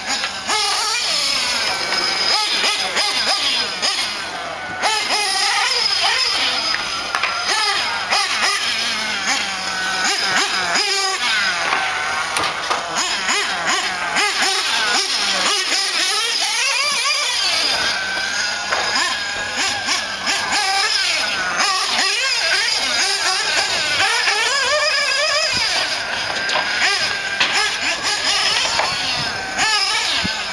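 Nitro engine of a 1/8-scale Mugen Seiki MBX-6T RC truggy running on a dirt track, its high-pitched whine rising and falling as the truck accelerates and brakes.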